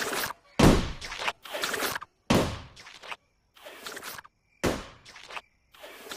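Rubber balloon being twisted into a balloon animal: a string of about six short rubbing bursts, each sharp at the start and quickly fading, the later ones fainter.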